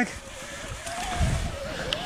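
A Yeti 160E e-bike being ridden down a trail: a faint rumble with a low thump about a second in, a thin wavering whine from the Shimano EP8 drive motor, and a short click near the end.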